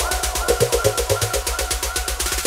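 Electronic dance music from a DJ mix: a fast, steady hi-hat pattern over a pulsing bassline, with short repeated synth notes.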